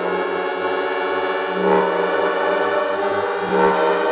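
Music from a live DJ set: sustained chords that swell about every two seconds over a pulsing bass line.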